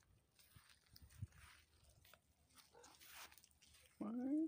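Near silence, with faint rustling on grass and a faint short cat meow about three seconds in.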